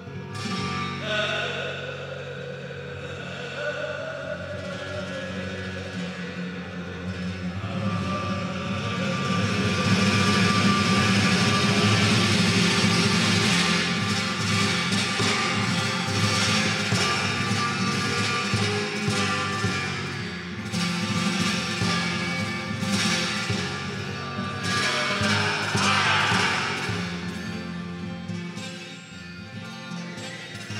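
Flamenco guitar played solo in a passage between sung verses.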